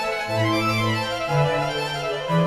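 Slow instrumental music with long held notes that change pitch in steps, laid over the video as background music.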